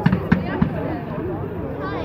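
Fireworks going off: about four sharp bangs come in quick succession within the first second, over the steady chatter of a crowd of onlookers.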